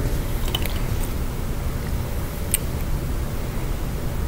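Steady low room rumble with quiet handling sounds as a trumpet is lifted into playing position, and a single short click about two and a half seconds in.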